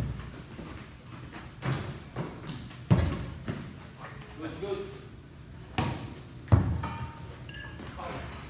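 A basketball bouncing on the gym floor, a handful of separate thuds at uneven intervals, each echoing in the large hall.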